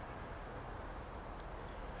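Faint steady low background rumble and hiss, with a single faint tick about one and a half seconds in.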